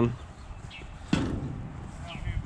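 A single sharp knock about a second in, the loudest sound here, over a steady low rumble.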